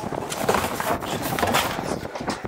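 Rough scraping and clattering over steady outdoor noise, fitting a hollow plastic traffic barrel being handled and dragged on asphalt.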